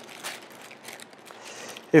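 Soft rustling of thin Bible pages being leafed through by hand.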